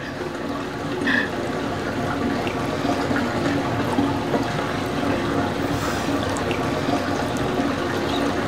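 Steady rushing and trickling water of a hot-spring pool.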